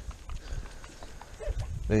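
Lambs shuffling in straw bedding: faint rustling with a few light knocks from hooves and movement.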